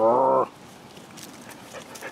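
A pet animal's short, low, wavering vocal sound, about half a second long, right at the start.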